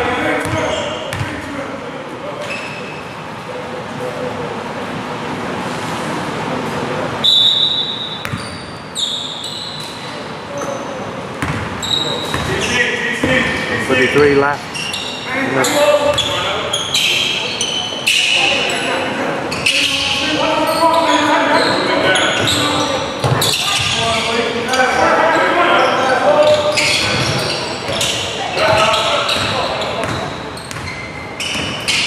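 A basketball being dribbled on a hardwood gym floor, with players' and bench voices calling out and echoing in a large hall.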